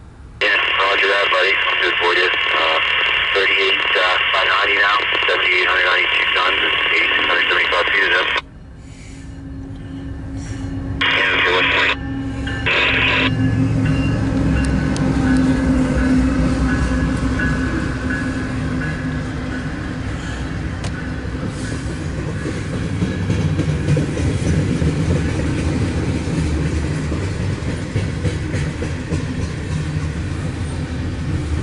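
A voice over a railroad scanner radio for about the first eight seconds, then two short radio bursts. From about nine seconds in, a loaded CSX coal train's diesel locomotives come up and pass close by: a rumble with a steady engine tone that grows louder and holds to the end.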